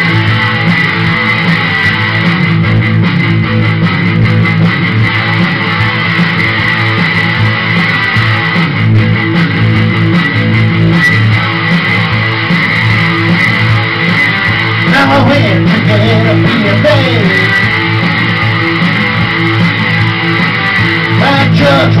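Guitar played through an instrumental passage of a song, steady and loud, with no singing.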